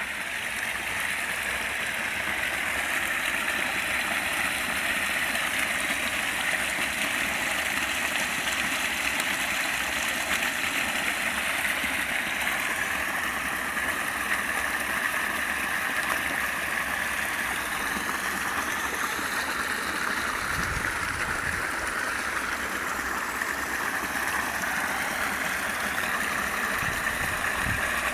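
Small forest brook running over stones: a steady rush and babble of water, with two brief low bumps in the second half.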